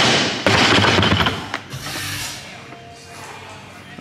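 A loaded barbell with rubber bumper plates set down onto wooden lifting blocks: a thud and rattle of plates in the first second, then a few lighter clanks. Faint background music.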